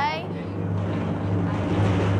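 A steady low rumbling suspense sound cue, held unbroken through a dramatic pause before an answer is revealed. The tail of a drawn-out, wavering voice fades out at the very start.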